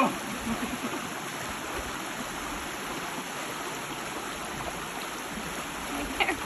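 Steady rush of flowing stream water, with light splashing from a person wading in it during the first second or so.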